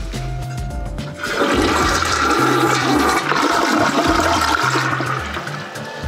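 Toilet flushing: a rush of water starting about a second in and running on as the bowl drains and refills.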